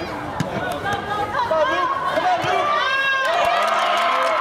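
Spectators and players shouting over one another, with a loud sustained shout rising into cheering about three seconds in as play goes to the goal, and a few short thuds of the ball being kicked.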